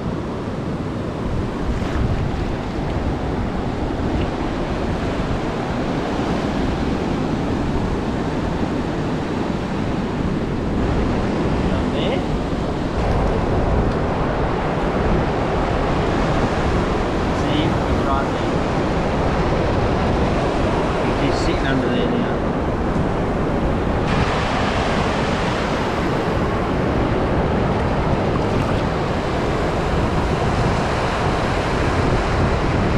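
Surf breaking and washing up a sandy beach, a steady rush of waves, with wind buffeting the microphone. The wash turns brighter and hissier about four-fifths of the way through.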